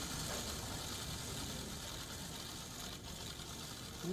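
Faint, steady hiss over a low background rumble: the room ambience of the footage, with no speech and no distinct events.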